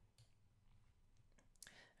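Near silence with a few faint computer-mouse clicks, one shortly after the start and a few more near the end, as a selection box is dragged on screen.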